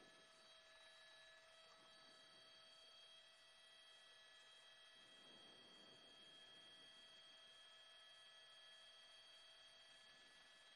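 Near silence, with only a faint, steady electronic whine of several held tones.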